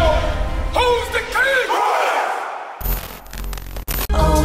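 A group of men's voices shouting together over background music, the shout fading out about two seconds in. A new stretch of music with a beat comes in near the end.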